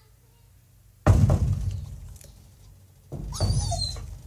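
A heavy thump about a second in that fades over a second. Near the end a second loud stretch of knocking and rustling comes with a high, squeaky sliding sound.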